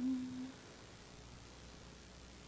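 A woman's closed-mouth hum, one steady held "mmm" lasting about half a second at the start, then only faint room tone.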